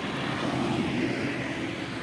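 A small pickup truck driving past on the road: steady engine and road noise.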